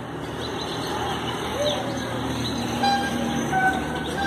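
Street traffic noise swelling louder, with a vehicle's reversing beeper sounding a repeated short beep, about every two-thirds of a second, in the last second or so.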